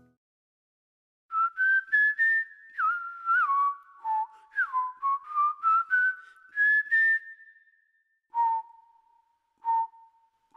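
A person whistling a short tune. The notes step upward, then fall, then climb again to a long held note, followed by three short separate notes on one lower pitch.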